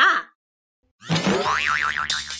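Cartoon 'boing' sound effect with a rapidly wobbling pitch, starting about a second in after a short silence.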